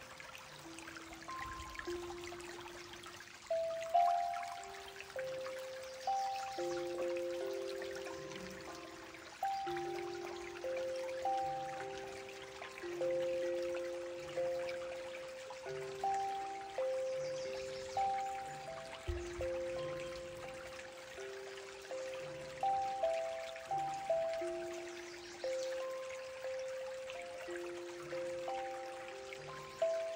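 Zenko "Baby Turtle" steel tongue drum played with mallets: a slow, gentle melody of single struck notes, each ringing and fading, a few to the second, over a faint trickle of stream water.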